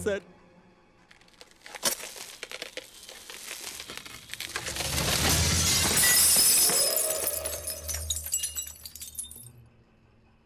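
Glass shattering. A sharp crack comes about two seconds in, then a swelling crash of breaking glass and scattering shards, loudest around six seconds in, which fades out near the end.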